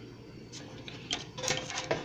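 Handling noise as a piece of clear plastic is set down over a small mold on a parchment-lined baking tray: a run of light clicks and crinkles of plastic and paper, starting about half a second in.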